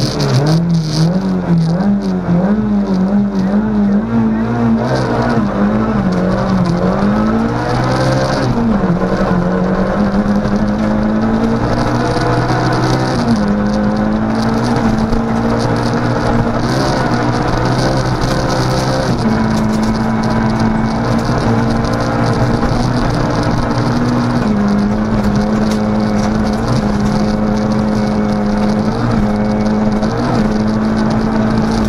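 Ford Fiesta R2 rally car's four-cylinder engine heard from inside the cabin, driven hard at high revs, its pitch dipping and climbing again at several gear changes and holding steady through the longer stretches in the upper gears.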